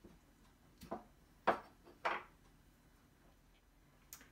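A few short knocks and clinks, about four over the first two seconds, as the lid is taken off a sugar canister and set down on a wooden table and a measuring spoon is picked up.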